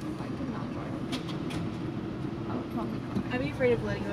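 Car engine running at low speed, heard as a steady low hum inside the cabin, with a few sharp clicks about a second in. A person's voice is heard briefly near the end.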